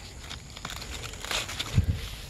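Stiff pineapple leaves crackling and rustling as a slip is worked loose from the plant by hand. A low thump comes near the end.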